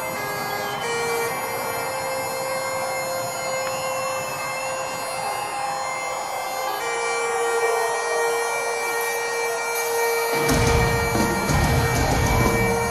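Bagpipes played live and amplified: steady drones under a slow, wailing melody. About ten seconds in, the band's heavy drums and bass come in underneath.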